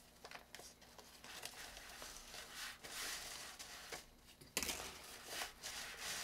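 Faint rustling and crinkling of a thin fabric stuff sack being handled while twine and wire are worked through its drawstring channel, with small clicks. It grows louder about halfway in and again near the end.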